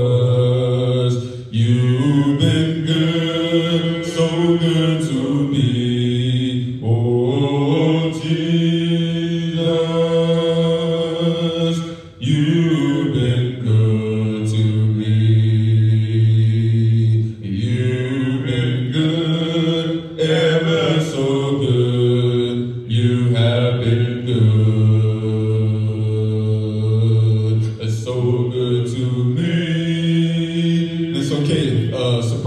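Unaccompanied voices singing a slow hymn, a cappella as is the practice in Churches of Christ, with long held notes in phrases a few seconds long.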